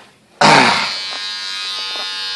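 Electric hair clippers switched on about half a second in, then buzzing steadily.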